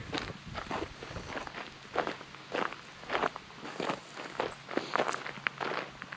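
Footsteps on a gravel path at a steady walking pace, just under two steps a second.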